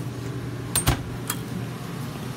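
A steady low hum in the background, with a few sharp clicks and clatters a little under a second in and again shortly after.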